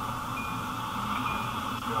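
Steady hiss on a gate intercom line with a low hum, and a few faint, short high-pitched tones scattered through it.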